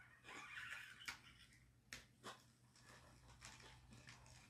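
Faint sipping of taro bubble tea through a wide straw: a short slurp about half a second in, then a few small clicks.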